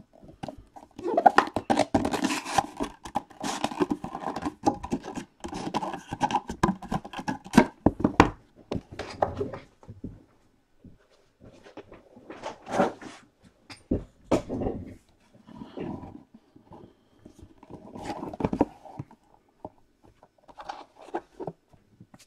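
Cardboard trading-card box being handled and opened: a busy stretch of rustling, scraping and light taps for the first several seconds, then scattered knocks as the box is set down and its lid lifted near the end.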